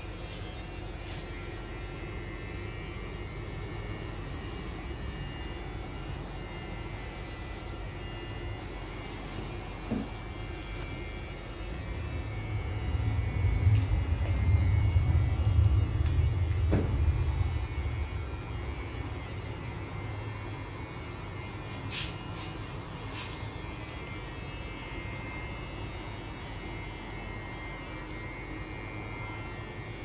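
Soft, faint dabbing and wiping of a paper napkin on a freshly shaved face, over a steady low rumble that swells for several seconds midway and then fades back down. A few faint clicks come in between.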